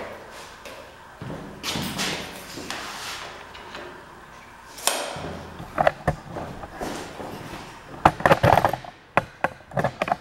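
Laminate flooring pieces handled and fitted on a wooden workbench: scraping and sliding sounds, then a quick cluster of sharp knocks and clicks about eight seconds in as the pieces are set together.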